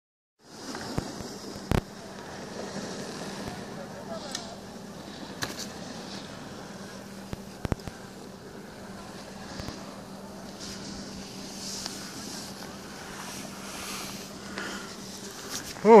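Chairlift ride: a steady low hum under an even haze of air noise, with a few sharp clicks and knocks scattered through, the strongest about two seconds in and again near eight seconds.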